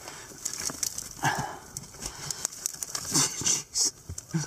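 Loose rocks and dry mud clods scraping and knocking together as a person moves through them by hand, with many small sharp clicks and knocks.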